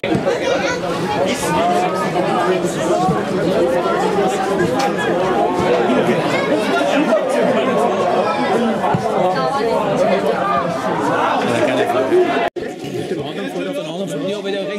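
Crowd of spectators chattering, many voices talking over one another. The sound cuts off abruptly about twelve seconds in, then quieter chatter resumes.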